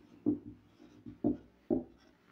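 A marker pen writing on a whiteboard: a few short, separate strokes as a word is written.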